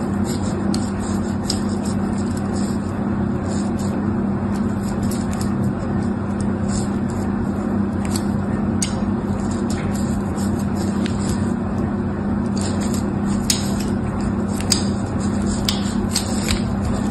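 A fine needle scraping lines into bars of soap: short, faint scratches that come and go, more often in the second half. Under it runs a steady low hum, the loudest thing throughout.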